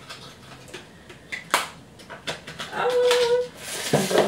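Cosmetics packaging being handled: a sharp click about one and a half seconds in, a few lighter clicks, then rustling. Near the end there is a short, steady, high-pitched whine.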